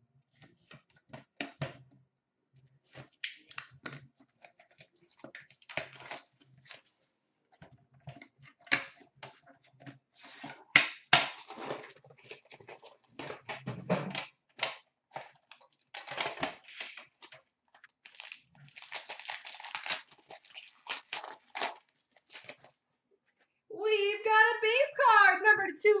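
Shrink wrap being slit and torn off a sealed hockey card box, then the box and the tin inside it being opened and handled: a long run of irregular crinkling, tearing and small clicks and taps.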